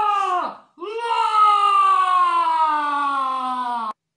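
A woman's voice, a puppeteer voicing a giant, giving a short cry and then one long drawn-out wailing call whose pitch falls steadily before cutting off sharply near the end.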